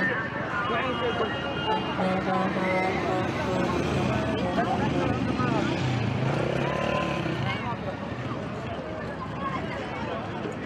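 Several people talking as they walk beside a road, with motor traffic driving past; a vehicle's engine swells and fades about halfway through.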